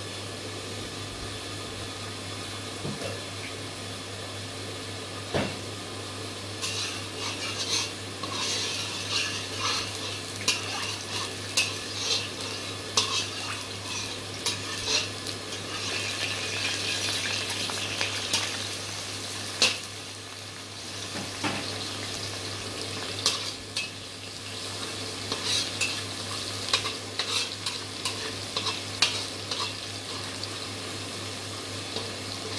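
Chopped garlic sizzling in hot oil in a black wok, with a slotted metal spatula stirring and clicking against the pan. The sizzling starts about six seconds in, over a steady low hum.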